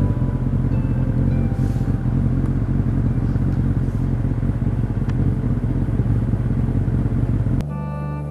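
A steady low rumble with a few faint background music notes about a second in; it cuts off suddenly near the end as organ music comes in.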